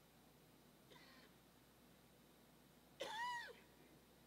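Near silence: room tone, broken by a faint short squeak about a second in and a louder high-pitched squeal about three seconds in that rises and then falls in pitch over half a second.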